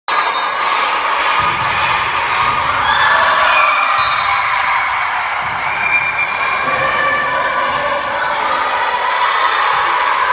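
A group of girls shouting and screaming together in celebration in a school sports hall, many high voices overlapping without a break.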